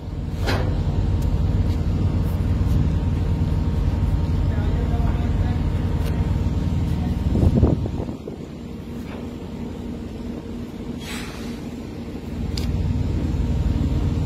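Wind buffeting the microphone outdoors over the steady hum of an idling truck engine, with a brief thump about seven and a half seconds in. The rumble drops away for a few seconds and then returns near the end.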